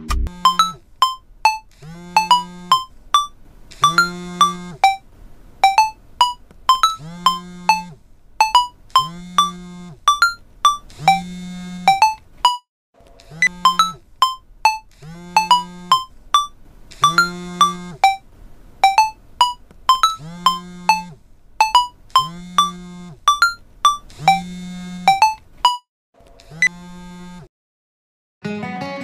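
Smartphone ringtone for an incoming call: a looping electronic melody of quick high notes over a low chord that comes back about once a second, breaking off briefly about 13 s in and again near the end.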